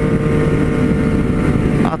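Triumph 765 cc three-cylinder motorcycle engine running at a steady highway cruise, holding one even pitch with no revving. Wind and road rumble sit under it.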